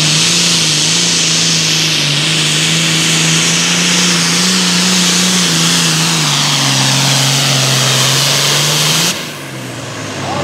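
Turbocharged diesel engine of a John Deere 4430 super farm pulling tractor at full power dragging a weight sled. The note holds steady, then sinks lower from about six and a half seconds in as the engine is pulled down under the load. The sound cuts off abruptly about nine seconds in, leaving a quieter rumble.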